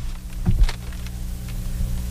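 A pause in talk with a steady low electrical hum, and a short knock about half a second in followed by a fainter click.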